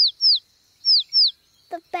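Cartoon baby bird chirping: four short, high chirps that each fall in pitch, in two quick pairs about a second apart.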